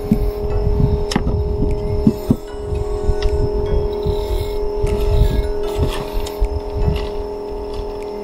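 A steady hum with several fixed tones, with irregular low rumbles and a few short clicks over it.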